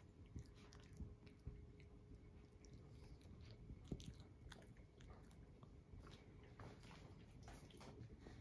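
Faint, irregular small clicks and smacks of licking and nibbling as a puppy and a tabby cat groom each other, with one slightly louder tick about four seconds in.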